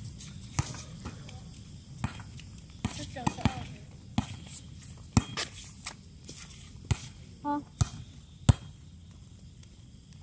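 A volleyball being bounced and hit on a hard outdoor court: about ten sharp, irregularly spaced smacks between rallies, with brief voices of players in between.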